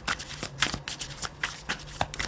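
Tarot cards being shuffled by hand: a quick, irregular run of card snaps and clicks.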